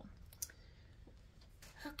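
Quiet room tone with one short click about half a second in, from small objects being handled. A voice starts just at the end.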